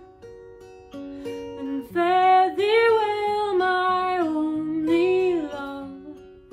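Acoustic guitar picked alone for about two seconds, then a woman's voice comes in over it, singing a long melodic phrase that fades out near the end.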